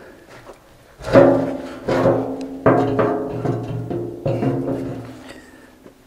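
A steel concrete-mixer drum knocked against its steel cradle several times as it is settled in place. Each knock sets the drum ringing with a tone that slowly dies away, and the first knock is the loudest.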